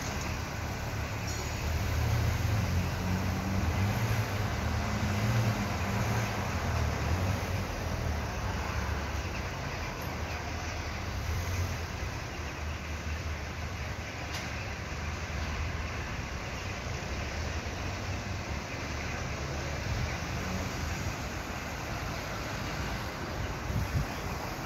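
Steady outdoor urban background noise with a low motor-vehicle engine rumble that swells in the first half and then eases off.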